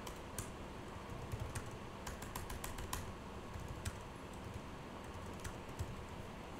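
Typing on a computer keyboard: an irregular run of light key clicks, thickest about two to three seconds in.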